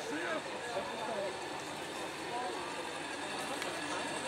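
Narrowboat engine running steadily as the boats pass slowly, with people's voices in the first second.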